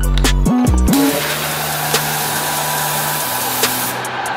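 Background music with bass notes, then about a second in a paint sprayer starts spraying: a loud steady hiss over a low hum that cuts off near the end.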